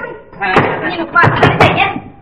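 Several loud bangs on a door, a few about half a second in and more just past the middle, with voices mixed in.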